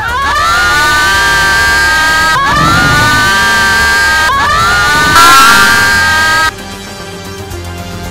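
Several girls screaming: three long, held, high-pitched screams, each starting with a rising glide, over music. The screams stop abruptly about six and a half seconds in, leaving quieter music.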